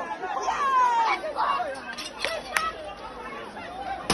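A crowd of many voices talking over one another, with a few brief sharp clicks or knocks around the middle.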